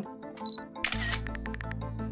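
Background music of a documentary score. About a second in, a short burst of noise hits as a sound effect, and a low, steady bass drone sets in under a run of quick ticks.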